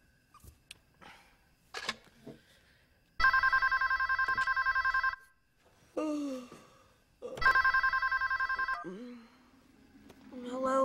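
Telephone ringing twice, a fast trilling ring of about two seconds and then about one and a half seconds, with a pause between.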